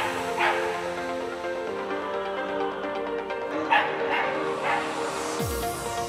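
A Scottish terrier barking in short, sharp yaps, twice right at the start and three times about four seconds in, over background music with long held notes.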